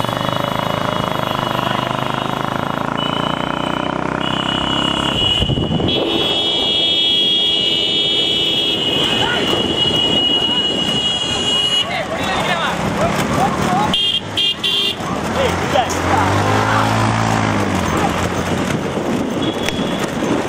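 Motorcycles running close behind bullock carts, with men shouting over the engines and a long, steady horn-like tone through the first half. Near the end, a motorcycle engine's pitch sweeps down and back up as it passes.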